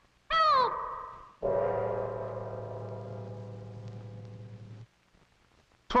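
Cartoon soundtrack: a short wailing cry that swoops up and then down in pitch, followed by a low held musical chord that fades slowly for about three seconds and then cuts off abruptly.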